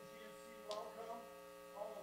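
Steady electrical hum from the stage sound system, made of several steady tones, with faint voices now and then.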